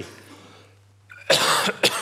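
A man coughing twice, a loud cough followed by a shorter one, about a second and a half in.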